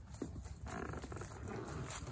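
Backpack fabric, cord and tree branches rustling and knocking as a pack is hung by its top handle on a stick toggle, with a low wind rumble on the microphone.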